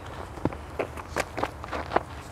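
Faint knocks picked up by the ground microphones during the bowler's run-up, evenly spaced at about two or three a second, over a low steady hum.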